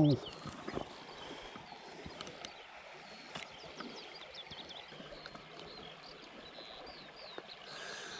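Faint outdoor ambience with small birds chirping in short repeated calls, and a few faint clicks from handling a small trout and the fly line.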